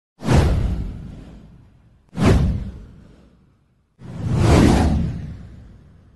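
Three whoosh sound effects from a title-card intro. The first two start sharply about two seconds apart and fade away. The third swells up more slowly about four seconds in and fades out.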